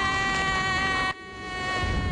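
A small aircraft's engine drones with a steady buzzing whine. The sound drops off suddenly a little past a second in, then swells back up.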